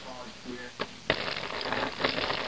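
Apple juice pouring from a jug into a plastic Ziploc bag of brined salmon, a steady splashing rush of liquid that starts about a second in.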